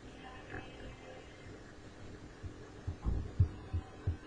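Faint steady hum, then a handful of short, dull low thumps close on the microphone in the last second and a half, the loudest about three and a half seconds in.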